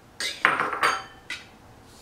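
Small glass prep dishes clinking and knocking against each other and the counter as they are handled: about four knocks, the second, about half a second in, the loudest and ringing briefly.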